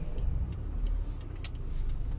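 Low rumble of a box truck passing close in front of a stopped car, heard from inside the car's cabin, with two faint ticks.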